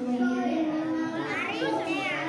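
A boy chanting Quran recitation (tilawah) into a microphone, holding long melodic notes with slow pitch bends. In the second half, higher children's voices rise and fall behind it.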